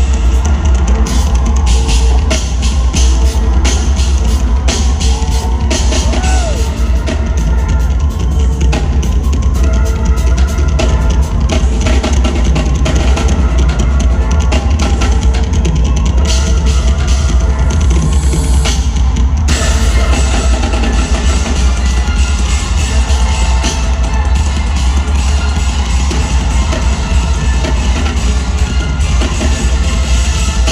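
Live drum kit solo: a drummer playing alone, a dense run of snare, tom and cymbal hits over a heavy bass drum, amplified loudly through an arena sound system.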